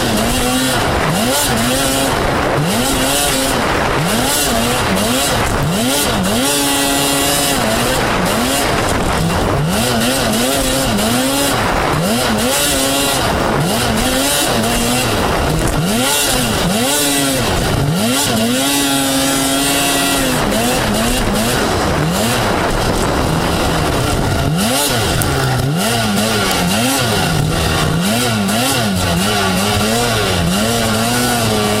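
Race snowmobile's two-stroke engine revving up and dropping back over and over, roughly once a second, with a few longer held pulls at high revs as the throttle is worked around the track. Heard from a camera mounted on the sled.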